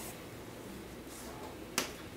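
Chalk on a chalkboard: a short, faint scratchy stroke, then one sharp tap of the chalk against the board near the end as a dot is marked.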